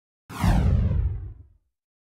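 A single whoosh sound effect that sweeps down in pitch and fades out after about a second, on the cut to the end-card logo.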